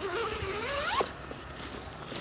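The zipper of a fabric tent carry bag being pulled open in one long run, its pitch rising for about a second before it stops, followed by fainter handling sounds.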